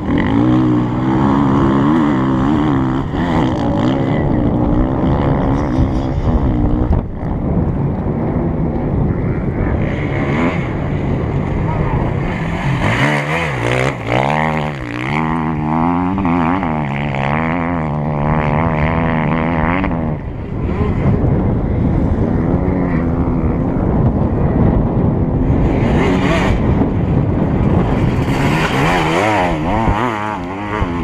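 Enduro motorcycles racing past one after another, their engines revving hard with the pitch climbing and dropping through throttle and gear changes. The loudest passes come at the start, in the middle and again near the end.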